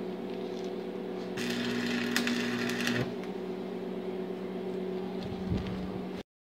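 Electric arc welder humming steadily while an exhaust pipe is welded, with a burst of crackling, sputtering arc about a second and a half long starting about a second and a half in.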